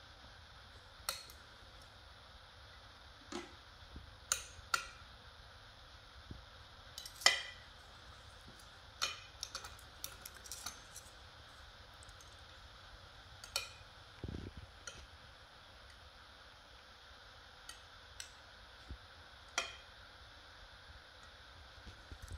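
Cheese knives and a fork being handled and set down: scattered light metal clinks and taps, a dozen or so at irregular intervals, the sharpest about seven seconds in, with a soft thump against the wooden board about fourteen seconds in.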